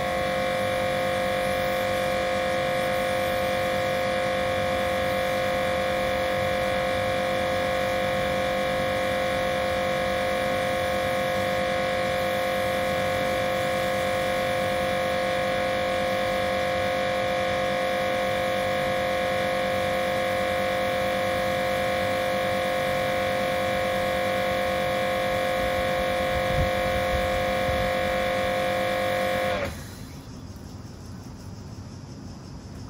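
Karcher K7 pressure washer running under load, its motor and pump giving a steady whine with a spray hiss while foam is sprayed through an MJJC Pro Foam Cannon. It cuts off abruptly near the end as the trigger is released.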